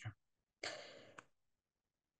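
A single breath from the lecturer into the microphone, a short soft hiss of about half a second that fades out near the middle.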